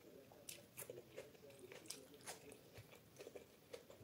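Faint close-miked chewing of a mouthful of food, with a run of short, crisp crunches and mouth clicks about every half second.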